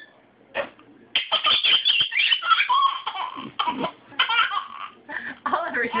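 Baby laughing in repeated high-pitched bursts, starting about a second in, with short breaks between fits.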